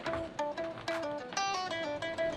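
Background music of picked guitar: a quick run of single plucked notes, several a second, in a light melody.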